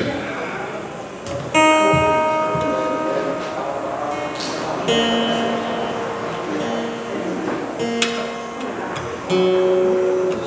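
Acoustic guitar being tuned: single strings plucked about five times, a second or more apart, each note left to ring and fade. The pitch shifts between plucks as the out-of-tune string is brought up to pitch.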